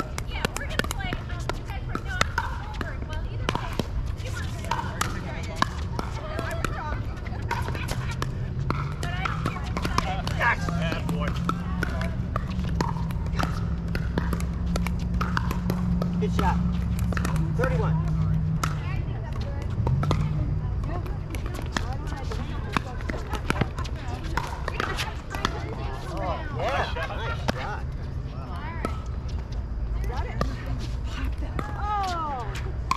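Pickleball play: paddles hitting the plastic ball in sharp pops, with ball bounces on the hard court, over a low hum that swells in the middle and faint voices.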